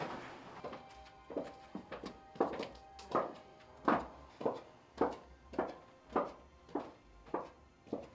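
Music with a steady thudding drum beat, a little under two beats a second, joined by faint sustained tones.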